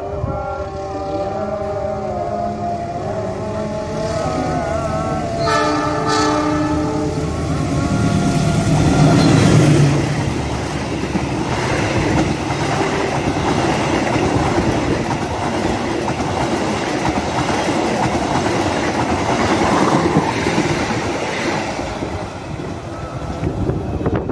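Locomotive-hauled express passenger train sounding its horn as it approaches, loudest in a blast about five to seven seconds in. It then passes at speed with a loud rush of wheel and rail noise and clickety-clack, which dies away near the end.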